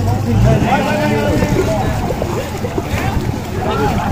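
Several people talking and calling over one another, the chatter of a group of onlookers, with a brief low rumble at the start.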